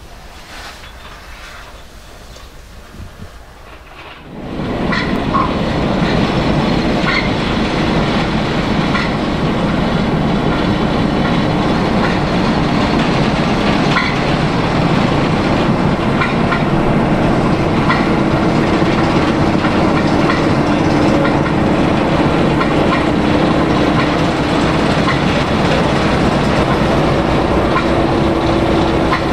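A quieter low rumble for about four seconds, then a Class 09 diesel shunter's engine running steadily under load as it moves a coupled locomotive along the track, with light wheel clicks over the rail joints every second or two.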